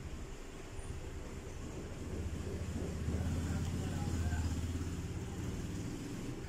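Low rumble of a passing road vehicle, swelling through the middle few seconds and then easing off.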